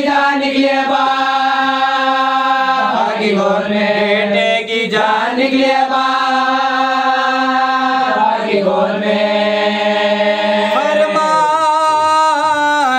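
A man singing an Urdu marsiya (elegy of mourning) unaccompanied, drawing the words out into long, held, wavering notes with a few short breaks.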